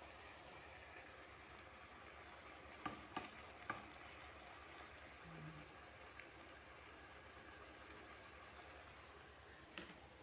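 Chicken drumsticks faintly sizzling and simmering in a pan of their own released water, a steady low hiss with a few sharp clicks about three seconds in.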